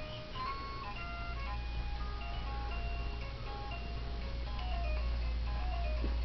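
Baby play gym's electronic music toy playing a simple chiming melody of short single notes stepping up and down, over a steady low hum.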